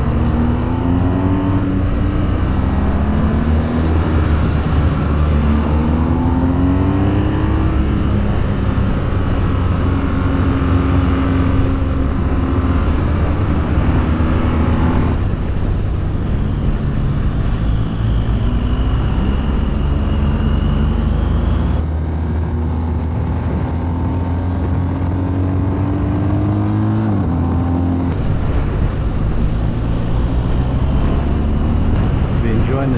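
BMW R 1250 GS boxer-twin engine accelerating through the gears, its pitch rising under throttle and dropping back at each upshift, several times over, with steady wind rush.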